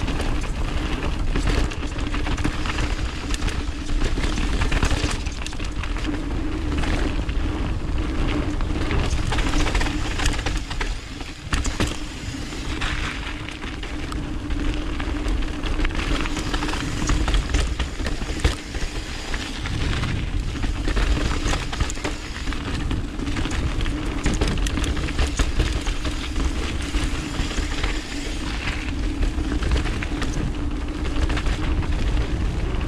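Mountain bike riding fast down a dirt and gravel trail: tyres rolling over the ground and the bike rattling over bumps, with wind rumbling on the camera microphone and a steady hum under it. The noise eases briefly twice, near the middle and about two-thirds through.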